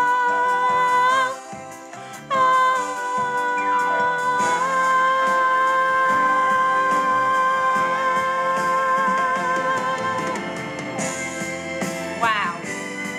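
A woman singing long held 'oh' notes over a recorded backing track. The last note is held for about six seconds.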